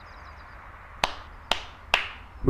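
Three sharp hand claps about half a second apart, starting about a second in.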